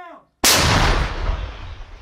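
2S9 Nona-S 120 mm self-propelled gun-mortar firing one round: a sudden loud blast a little under half a second in, its boom dying away slowly over the rest.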